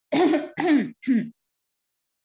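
A person clearing their throat in three short bursts, one after another.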